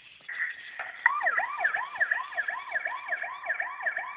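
Police-car siren sound in a fast yelp: a wail rising and falling about three times a second. It starts about a second in over a thinner steady tone.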